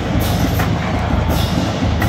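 Marching band drumline playing, with cymbal-like crashes recurring about every half second over a deep, steady rumble.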